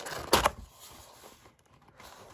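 Cardboard trading-card hobby box handled as its lid is pulled up: one sharp tap of the cardboard about a third of a second in, then faint rustling that fades away.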